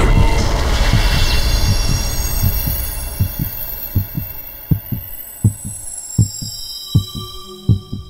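Heartbeat sound effect: paired low lub-dub thumps about every three-quarters of a second, under a synthesized whoosh that swells at the start and fades over the first few seconds, with thin high ringing tones held above.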